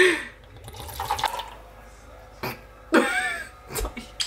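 Tequila poured from the bottle into a styrofoam cup, with a woman laughing a few times over it.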